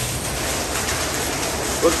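Steady hiss and splash of water from decorative floor jets and falling streams in a rock cave.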